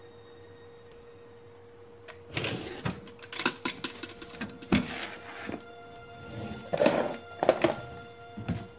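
Wooden drawers being pulled open and rummaged through: an irregular run of thunks and rattles starting about two seconds in, over a steady held tone of background score.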